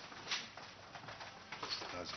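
Faint room noise in a large hall, with a brief click or knock about a third of a second in and some faint voices.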